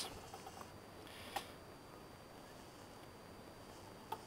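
Quiet workshop room tone with faint handling of small metal engine parts by hand, and one light click about a second and a half in.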